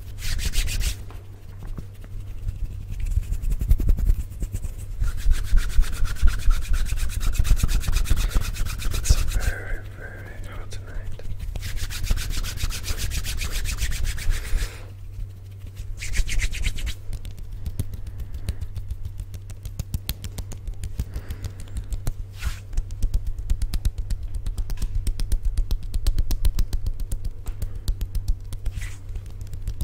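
Bare hands rubbing, swishing and fluttering close in front of a microphone: fast, dry skin-on-skin rubbing in uneven stretches with short lulls, over a steady low hum.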